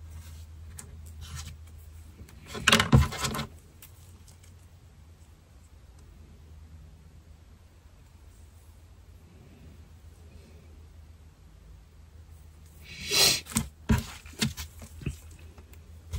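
Handling noises at a workbench: a short, loud rustling scrape about three seconds in, then a run of small knocks and rustles near the end, over a faint low hum.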